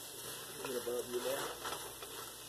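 Vegetables and tomatoes being stirred in a cooking pot, with a faint sizzle and soft scraping of the spoon. A voice murmurs quietly partway through.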